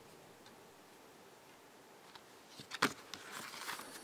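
Sony CMT-NEZ30's top-loading CD mechanism reading a freshly loaded disc: faint ticks, a sharper click about three seconds in, then a faint whir as the disc spins up.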